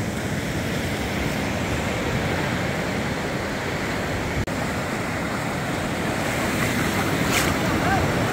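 Lake Superior waves washing onto the sand beach in a steady rush, with some wind on the microphone; the sound drops out for a moment about halfway through.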